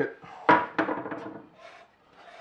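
A hard plastic mounting bracket set down on a wooden tabletop: one sharp clack about half a second in that rattles and dies away, then faint handling noise.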